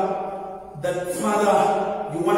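A man praying aloud into a microphone in words that are not English, with a brief pause about half a second in.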